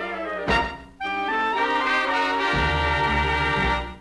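The closing bars of an orchestral recording on a 78 rpm record. A sharp accent comes about half a second in, then a final chord is held for nearly three seconds and stops just before the end.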